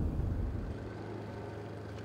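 Low vehicle rumble that eases within the first half second into a faint, steady low hum of traffic.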